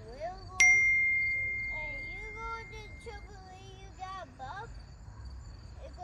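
A single metallic ding about half a second in: a sharp strike on metal that rings on as one clear high tone, fading over about two and a half seconds. Crickets chirp steadily underneath.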